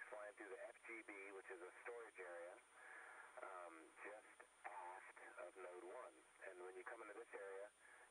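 A person talking over a radio link, the voice thin and narrowed, with a faint steady high-pitched tone behind it.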